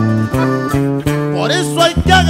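Instrumental break in a Mexican corrido: plucked guitar lines over steady low bass notes.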